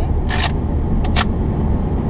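The plastic pump action of a Dart Zone Powerball foam-ball blaster being worked: a short rasping stroke, then two sharp clicks about a second in. A steady low car road rumble runs under it.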